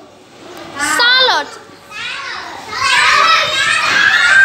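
Young children's voices in a classroom: one high-pitched call about a second in, then many children calling out together from about three seconds in.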